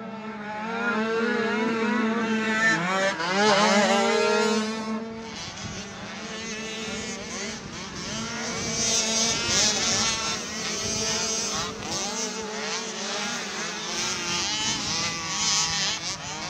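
Small racing ATV engine revving hard and easing off again and again as the quad is ridden around a motocross track. A steady lower engine note runs under the first few seconds.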